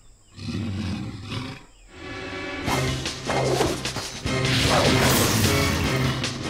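Cartoon soundtrack: a low, growl-like animal sound in the first second and a half, then music that comes in about three seconds in and grows louder.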